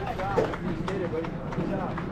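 Several indistinct raised voices, young players and people at the field calling out and chattering over one another, with no clear words.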